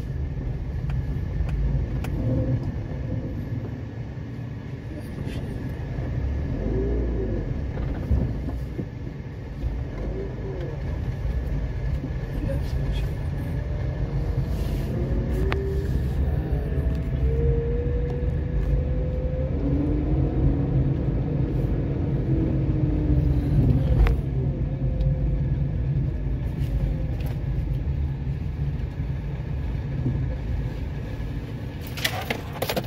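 A car driving along a street, heard from inside: a steady low rumble of engine and road noise that swells slightly in the second half.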